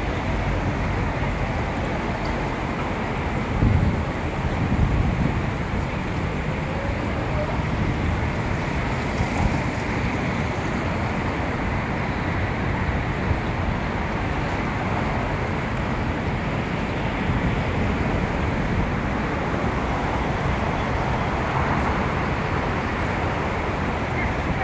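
Steady outdoor city street noise: traffic running by, with wind rumbling on the phone's microphone and a couple of louder low bumps about four and five seconds in.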